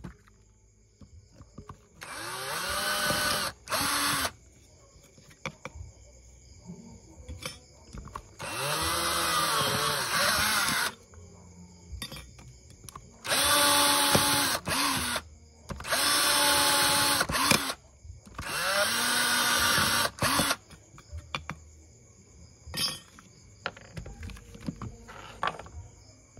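Black & Decker cordless drill, running on its newly fitted LiFePO4 battery pack, drilling holes through a thin sheet: several runs of motor whine of about two seconds each, each rising in pitch as the motor spins up, with short pauses between.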